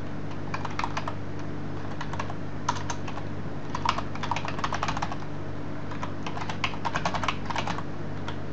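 Typing on a computer keyboard in several short runs of keystrokes, a username and then a password being entered, over a steady low hum.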